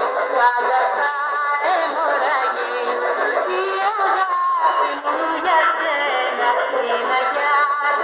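Music with singing played through the speaker of a Tecsun portable radio receiving the 1440 kHz medium-wave AM broadcast. The sound is thin and narrow, with no bass and no treble, as AM reception gives.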